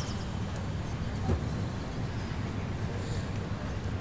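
Steady city traffic ambience: a continuous low rumble of road vehicles, with a brief louder swell about a second in.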